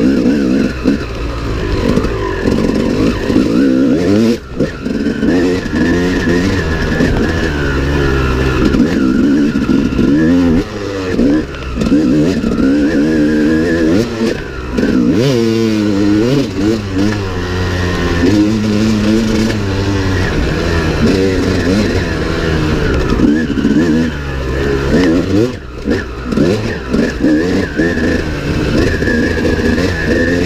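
Dirt bike engine ridden hard along a trail, its pitch rising and falling over and over as the throttle is opened and shut through the gears, with a few brief drops where the throttle is chopped.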